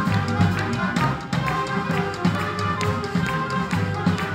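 A large band of saxophones, clarinets and other wind instruments playing with a drum kit, the drums keeping a steady beat under the held horn notes.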